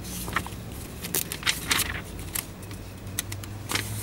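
Pages of a paper service booklet being leafed through by hand: a series of short, crisp rustles and flicks.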